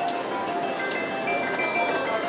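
Legion Warrior video slot machine playing its jingly electronic free-games bonus music, a melody of held tones, while the reels spin for the next free game.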